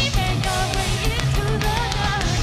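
Hard rock band playing live: distorted electric guitars over drums and bass, loud and unbroken.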